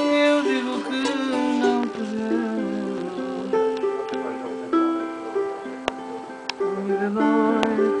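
Madeiran rajão, a small five-string guitar, played solo, picking out a melody in quick plucked notes that ring clearly.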